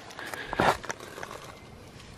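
Faint scattered crackles and one short rustle about half a second in: footsteps and handling noise on dry leaves and twigs at the base of a log.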